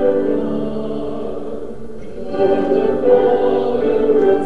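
Slow choral music with long sustained sung notes, easing off briefly about two seconds in and then swelling again.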